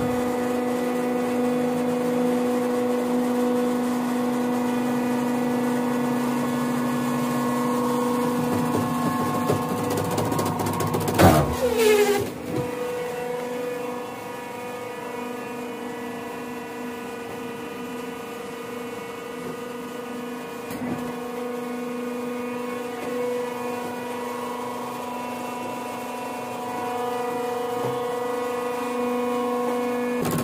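Hydraulic coir pith block press running with a steady pitched hum. About 11 seconds in comes a loud clatter with a falling whine, after which the hum goes on a little quieter and grows louder again near the end.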